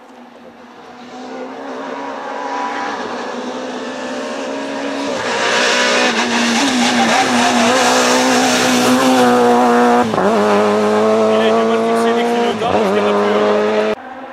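Rally car engine at high revs approaching and passing, growing louder over the first few seconds. Its note drops sharply and climbs again three times, most plainly about ten seconds in and near the end.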